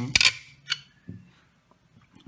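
A small steel screw clicking and scraping against a metal chassis bracket as it is pushed through the hole: a quick cluster of sharp clicks at the start, another click a little later and a faint knock, then near quiet.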